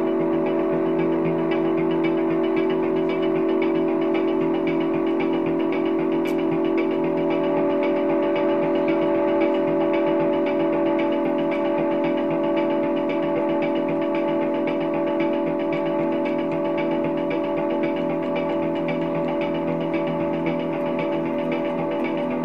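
Electric guitar played through effects, sounding a sustained ambient drone: several held notes layered together, steady and without a beat.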